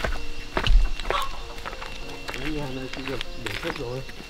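Footsteps on a dirt and gravel path, with a low thump just under a second in, then voices talking in the background from about halfway.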